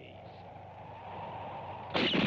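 A faint, even hiss that slowly grows louder, then a pistol shot right at the end.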